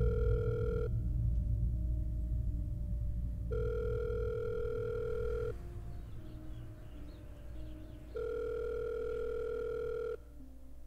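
Telephone ringback tone heard on a call: a steady tone of about two seconds that repeats three times, with a low drone underneath. The call is ringing at the other end and has not been answered.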